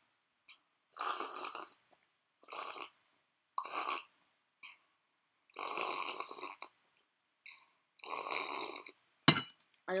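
A boy drinking from a cup, with five breathy gulping and breathing sounds at the cup about every second and a half, the last two longer. Near the end there is a sharp knock, then a short exclamation.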